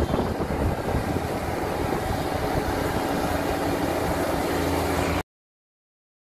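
Kubota DC35 combine harvester running, a steady dense machine noise that cuts off suddenly about five seconds in.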